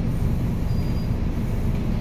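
Steady low rumble of a city bus in motion, heard from inside the passenger cabin.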